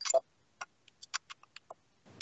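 A louder click at the start, then a quick, irregular run of short, sharp clicks and taps.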